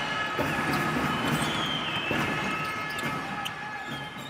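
A basketball being dribbled, bouncing about once a second, with a few high squeaks over a steady background; it fades out near the end.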